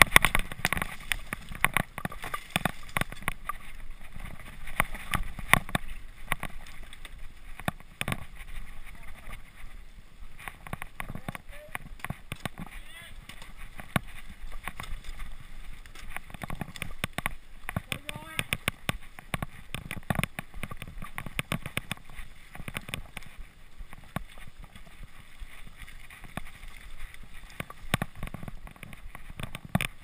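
Mountain bike rattling and clattering over a rough dirt trail, with a steady rush of tyres over dirt and leaves and frequent sharp knocks from bumps and roots.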